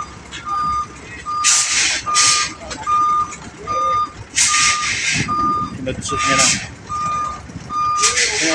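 A cargo truck's reversing alarm beeping at a steady pace, about one beep every 0.8 seconds, while the truck backs up. Several short, loud hisses break in between, the loudest about one and a half, two, four and a half and six seconds in.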